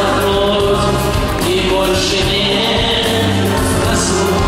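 A male voice singing a pop ballad live into a microphone, holding long notes over amplified backing music with choir-like backing voices.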